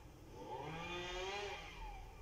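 A passing motor vehicle: an engine tone that swells for about a second, then drops in pitch and fades near the end.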